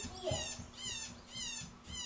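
Short, high-pitched calls that slide downward, repeated evenly about twice a second, from a small animal, over a faint steady hum.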